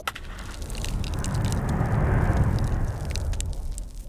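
A rush of crackling noise that swells to a peak around the middle and then fades, a transition sound effect between segments.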